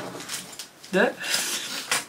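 Light clinking and rustling of small items being handled, with one short spoken word about a second in.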